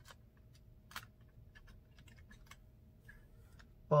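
A few light plastic clicks and taps as an HO model boxcar is handled and set onto a section of track, the sharpest click about a second in, followed by scattered faint ticks.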